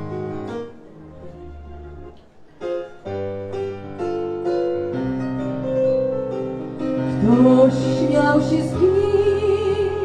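Nord Stage 2 EX stage keyboard playing piano chords, softer with a brief gap about two seconds in, then fuller. About seven seconds in a woman's voice comes in, singing long held notes with vibrato.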